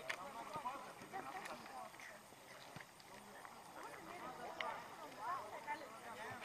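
Faint, unintelligible voices of football players talking and calling out, with a few sharp clicks scattered among them.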